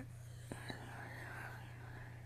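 Faint whispered speech over a steady low electrical hum, with two small clicks about half a second in.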